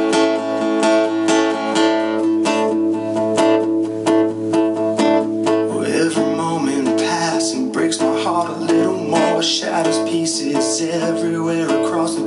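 Acoustic guitar strummed steadily as a song's introduction. A man's singing voice comes in about halfway through, over the guitar.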